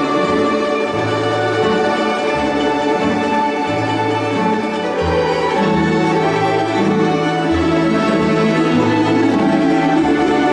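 Russian folk orchestra of domras and balalaikas playing an ensemble piece, plucked strings over a bass line that steps between held notes.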